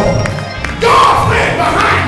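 Congregation shouting and calling out together over music during a church service, dipping briefly and then surging back louder a little before a second in with a voice rising in pitch.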